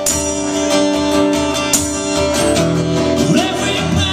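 Acoustic guitar strummed in a steady rhythm, its chords ringing out; in the second half a man's voice comes in singing over it.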